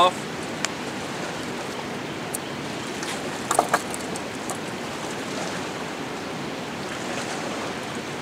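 Steady rushing of flowing river water.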